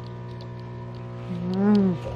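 A short, low vocal sound whose pitch rises and then falls, about one and a half seconds in, over a steady background hum.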